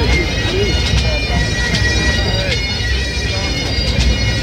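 A pipe band's Great Highland bagpipes playing a tune over their steady drones, with drum strokes cutting in.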